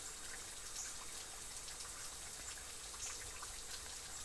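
Water trickling and dripping off a rock ledge: a faint steady patter with scattered small drips.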